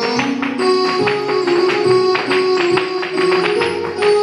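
A traditional Irish set-dance tune playing, with the rapid, rhythmic clicks and taps of two dancers' hard shoes striking the floor in time with it.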